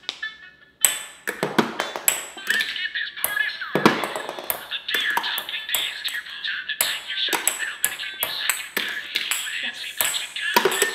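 Deer Pong toy's thirty-second electronic jingle playing from its speaker, starting about a second in, with ping pong balls repeatedly ticking and bouncing on the countertop and into the plastic cups.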